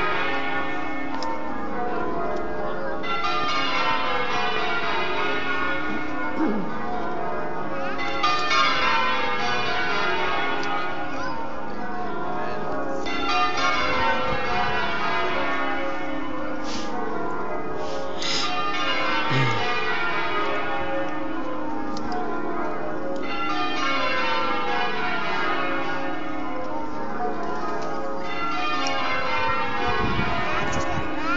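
Church bells ringing continuously, the bells striking one after another down the scale in repeated rounds that come around about every five seconds, as in change ringing.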